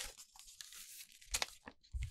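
Paper inserts of a CD album rustling and sliding as they are handled by hand, with a sharp crackle of paper about a second and a half in.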